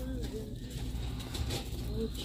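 Faint, distant voice-like sounds, short arching tones, over a low steady background hum.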